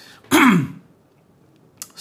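A man clears his throat once, a short loud burst with a falling pitch.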